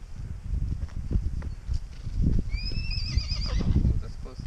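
A pony whinnying once, about two and a half seconds in: a call that rises and then wavers for about a second. Low rumbling noise runs underneath throughout.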